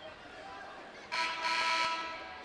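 Basketball arena horn sounding once, abruptly, about a second in, for just under a second, then fading in the hall.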